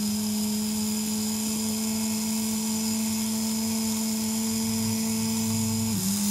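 Small brushed DC gear motor running steadily under power from an L298N motor driver module, with an even, constant-pitch hum from the motor and gearbox.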